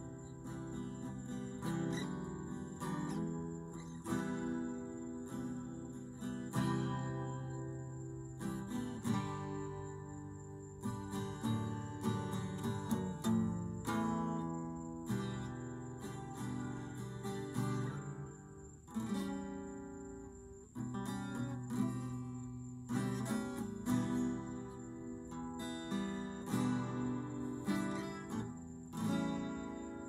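Acoustic guitar strummed, with repeated chord strokes and changing chords in an unaccompanied instrumental passage.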